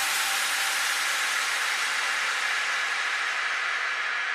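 Steady white-noise hiss from an electronic sound effect, mostly high-pitched and slowly fading, with no beat or tone.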